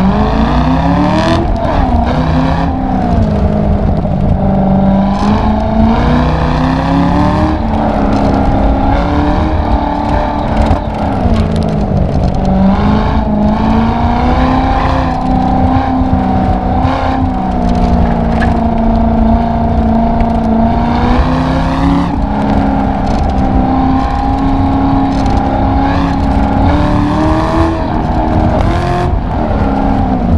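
Convertible sports car's engine revving hard through an autocross run, heard from the open cabin. Its pitch climbs steeply in the first second off the launch, then repeatedly rises and falls as the car accelerates and slows between cones, with wind and road rumble underneath.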